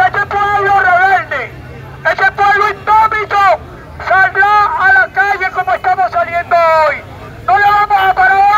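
A man's voice shouting through a megaphone, loud and harsh, in short phrases with brief pauses, over a low murmur of the crowd.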